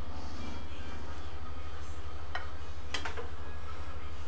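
A cooking utensil scraping and clinking against a frying pan as shrimp are scooped out onto a plate, with a few sharp clinks about two and three seconds in. A steady low hum lies underneath.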